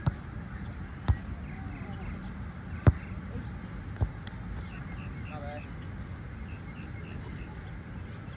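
A volleyball struck by hands four times in a rally: sharp slaps near the start, about a second in, near three seconds and around four seconds, the third the loudest. A low steady background rumble and faint distant voices run underneath.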